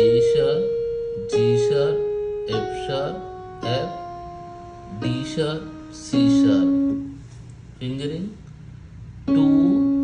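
Yamaha electronic keyboard playing a scale one note at a time, each note struck and left to die away. The notes step down in pitch about every second and a bit, with a longer gap before the last, lowest note near the end.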